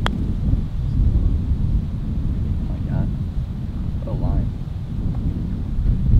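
Wind buffeting the microphone, a dense low rumble throughout. A single sharp click right at the start as a putter strikes a golf ball.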